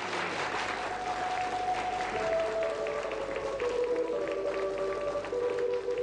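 Audience applause with music: a slow melody of held notes comes in about half a second in, while the clapping thins into separate claps.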